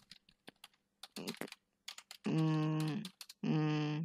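Computer keyboard clicking as someone types, with irregular keystrokes throughout. In the second half a person hums two steady, level "mm" tones over the typing, louder than the keys.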